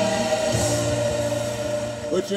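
Gospel choir music, a long held chord that fades near the end.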